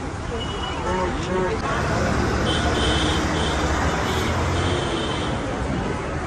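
City road traffic heard from an open-top tour bus: a steady low engine hum under a wash of road noise. A few faint voices come through in the first second or so, and a high steady tone sounds for a couple of seconds in the middle.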